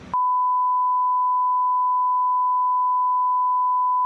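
Television colour-bars test tone: a single steady beep at one unchanging pitch, cutting in suddenly right at the start and holding at a constant level.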